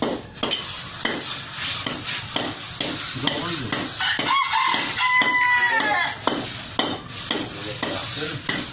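Hand trowel scraping over wet concrete in short repeated strokes, about two or three a second. A rooster crows about halfway through, a call of about two seconds.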